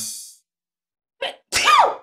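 The tail of electronic intro music fades out. Near the end comes a short breathy burst, then a brief vocal sound whose pitch rises slightly and falls.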